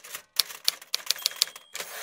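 Typewriter sound effect: a quick run of key strikes, about six a second, ending in a longer, denser rattle near the end.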